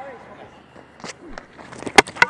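Quiet background at a cricket ground with a few faint knocks, then near the end one sharp, loud crack as the cricket ball hits the stumps and knocks them over.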